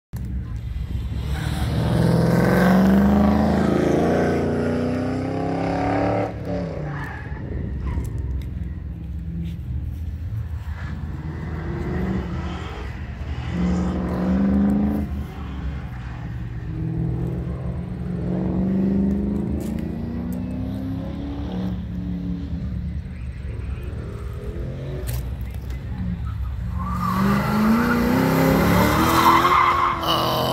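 A car's engine accelerating hard again and again on an autocross course, its pitch rising in sweeps and then dropping between them. Tires squeal loudly near the end.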